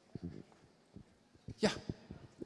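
Soft knocks and rustles of a handheld microphone being handled, against the hall's quiet room tone, then a man's short spoken "ja" near the end.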